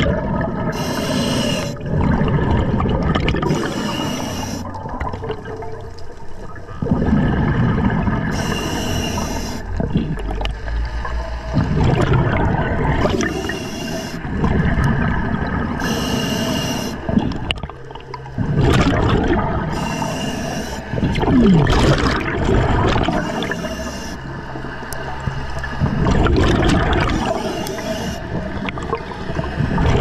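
Scuba diver breathing underwater through an Atomic regulator: a hissing inhalation about a second long every three to four seconds, each followed by a longer low bubbling rumble of exhaled air.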